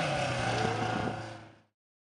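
Off-road race truck's engine running at a steady note, noticeably quieter than the hard revving just before, then fading out to silence about a second and a half in.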